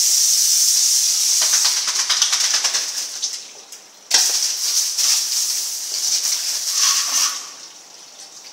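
Water spraying from a hose onto a concrete floor: a steady hiss that dies down about three and a half seconds in, starts again abruptly just after four seconds, and fades out near the end.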